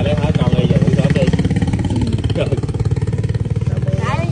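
A motorcycle engine running steadily with a rapid, even beat. Faint voices can be heard behind it.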